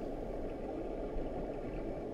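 Steady low rushing of fast-flowing river water heard underwater, a dull even roar with no distinct events.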